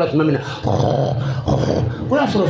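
A man's deep, rough voice, speaking and then holding one low, steady drawn-out sound for about a second in the middle.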